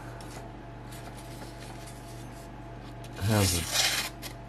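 A high-carbon steel knife blade slicing through a sheet of paper near the end, a short hissing cut, as a test of how sharp the edge is. Before it there is only a faint steady hum, and a brief voiced murmur just ahead of the cut.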